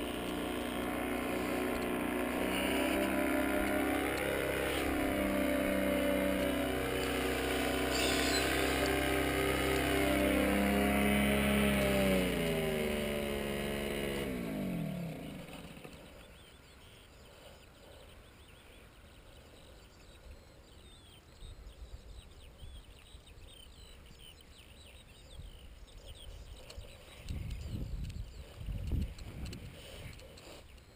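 Paramotor engine running, its pitch rising and falling with the throttle, then dropping and fading away about fifteen seconds in. Afterwards only a faint background, with a couple of low rumbles near the end.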